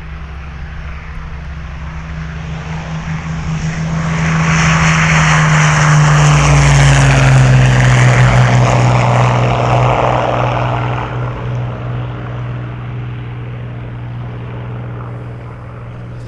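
Propeller-driven piston airplane taking off at full power. The engine grows louder as it runs down the strip and passes, its note drops in pitch as it goes by, and then it fades as the plane climbs away.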